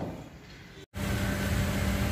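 Faint hiss, then a split-second drop to total silence at an edit. After it, steady outdoor background noise with a constant low hum.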